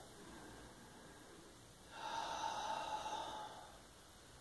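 One audible breath from a person holding a yoga pose, starting about two seconds in and lasting about a second and a half, over faint room tone.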